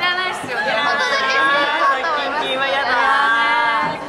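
Several women talking animatedly, their voices overlapping in lively chatter.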